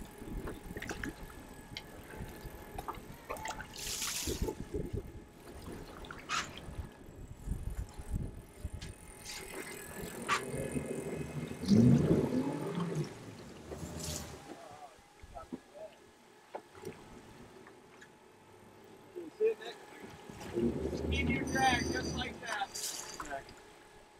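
Water sloshing and splashing against a fishing boat's hull, with scattered clicks. Indistinct voices talk briefly near the middle and again near the end.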